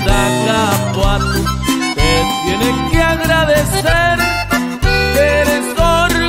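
Instrumental break in a corrido: a reedy lead melody played over bass and guitar with a steady beat.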